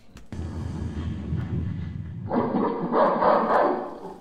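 Intro sound effects of a music video playing back through a device speaker: a low rumble, then about two seconds in a louder, brighter sting that runs to the end.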